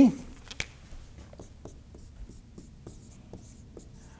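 Marker pen writing on a whiteboard: short, faint taps and strokes of the tip as numbers are written, with a sharper click about half a second in.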